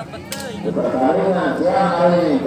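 Men's voices talking and calling out, with one sharp smack about a third of a second in.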